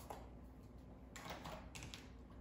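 Two short hissing sprays from a pump-mist setting spray bottle, about a second in and near the end, misting a face.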